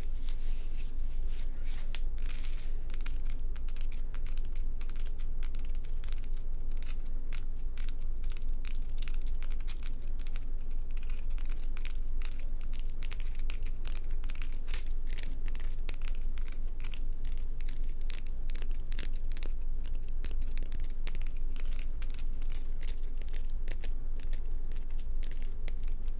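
Long fingernails scratching and rubbing over a black bumpy rock close to the microphone: a dense, continuous run of quick crackly scrapes and clicks. A steady low hum runs underneath.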